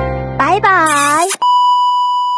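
Background music stops, a short voice-like sound slides up and then down, and then a steady electronic beep tone starts about halfway through and holds. It is the test-tone beep of a 'missing signal' screen effect.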